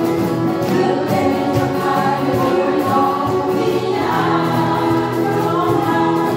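A group of women singing together while strumming acoustic guitars in a steady rhythm; the sung line changes about four seconds in.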